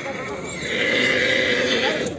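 A stallion neighing: one loud call lasting just over a second, starting about half a second in, over crowd chatter.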